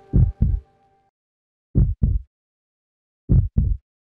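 Heartbeat sound effect: low double thumps, lub-dub, three pairs about a second and a half apart, with silence between them.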